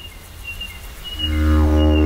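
A didgeridoo drone starts about a second in: one low, steady note with a rich stack of overtones. A faint thin high tone is heard before it.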